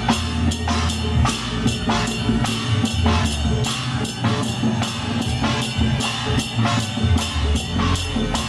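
A Taiwanese temple-procession percussion troupe playing hand-held gongs, cymbals and a drum together in a fast, steady beat, the gongs and cymbals ringing over deep drum strokes.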